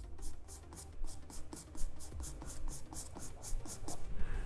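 Charcoal pencil scratching on drawing paper in quick, short hatching strokes, about five or six a second.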